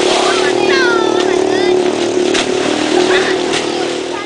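A splash as a child jumps into an irrigation canal, with children's high shouts and calls, over a steady motor drone.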